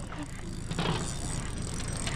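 Fishing reel being cranked steadily, a fast, even ticking, as line is reeled in with a fish on.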